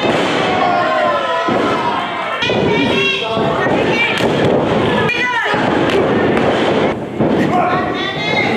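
Shouting voices with several heavy thuds of wrestlers hitting the ring mat. One shout about five seconds in rises sharply in pitch.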